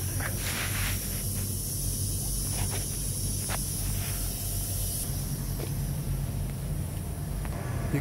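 Semi truck's diesel engine idling with a steady low hum, under a high steady hiss that stops about five seconds in, with a few light clicks.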